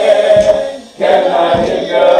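A small group of voices singing a gospel song together: a long held note fades out just before the middle, and a new sung phrase starts about halfway through.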